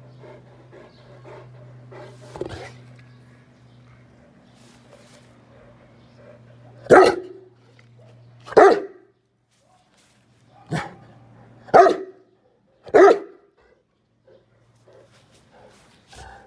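A dog barking five times, single sharp barks a second or two apart, starting about seven seconds in. Before the barks there are only faint scattered sounds over a low steady hum.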